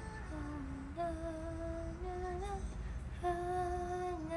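A woman humming a slow tune in long held notes that step down and then back up between a few pitches, with a short pause about two and a half seconds in.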